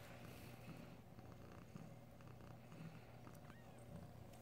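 A domestic cat purring faintly and steadily, with a few soft ticks and rustles.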